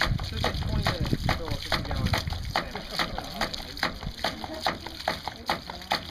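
Homemade PVC ram pump running: its waste valve clacks shut about three times a second, each slam sending a spurt of water splashing out of the valve fitting.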